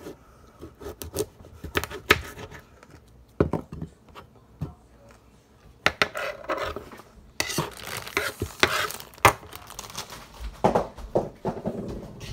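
A kitchen knife cutting a radish on a wooden countertop: irregular taps and knocks of the blade against the wood, with scraping. There is a denser stretch of clatter and rustling a little past the middle.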